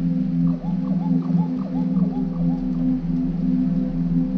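Ambient music: a steady low droning pad that throbs gently, with a quick run of about eight short upward-sweeping chirps, about four a second, starting about half a second in and stopping past the middle.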